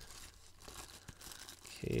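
Plastic cling wrap crinkling and tearing faintly as hands peel it off a stack of baseball cards, with a few small ticks.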